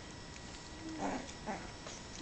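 Two-week-old Brittany puppy giving two short whines, the first about a second in with a slightly falling pitch and the second half a second later.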